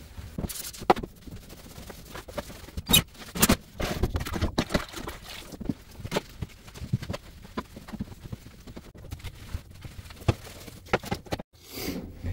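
Irregular knocks, taps and scrapes of a mop being worked over a floor, mixed with footsteps.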